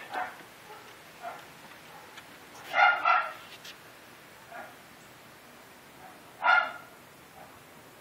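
A dog barking: two quick barks about three seconds in and a single bark near the end, with a few faint yelps between.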